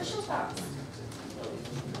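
Indistinct low murmur of several voices: students talking quietly among themselves in a classroom, with no clear words.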